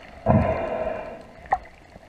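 Muffled underwater sound of water moving around a submerged camera, with a loud rush of water starting about a quarter second in and a single sharp click about a second and a half in.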